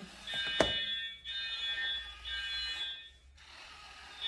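Electronic fire-alarm tone from the robot's fire alert: a buzzy steady tone sounding in three pulses of under a second each, signalling that a fire has been detected. A sharp click about half a second in.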